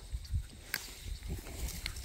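Faint handling of a tomato plant: leaves rustling and a few soft clicks as ripening tomatoes are picked from the vine by hand, over a low steady rumble.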